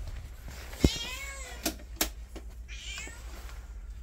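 A ginger cat meowing twice, the first call about a second in and the second near three seconds. A sharp knock just before the first meow is the loudest sound, followed by a couple of fainter clicks.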